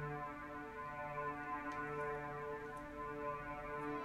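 Arturia Pigments software synthesizer playing the MPE String Pad preset, a pad built on a granular engine playing an electric-guitar sample: sustained, overlapping synth notes that change about once a second.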